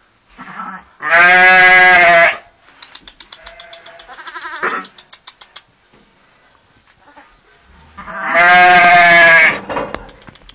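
Sheep bleating: two long, loud, wavering bleats, the first about a second in and the second near the end, with faint quick clicks and softer sounds between them.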